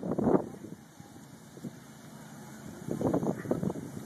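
Nearby people's voices in short bursts at the start and again near the end, over a low, steady outdoor rumble.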